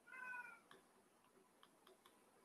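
Near silence broken by a faint, short call with a slightly falling pitch in the first half-second, like a cat's meow, then a few faint taps of a stylus on a tablet screen as handwriting starts.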